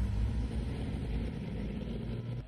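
Leopard 2 main battle tank on the move, its V12 diesel engine running with a steady low drone.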